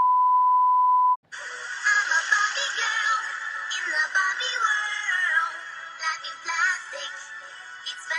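A steady high test-tone beep of the 'please stand by' kind, held for about a second and cut off sharply. Then a song with high-pitched synthesized singing.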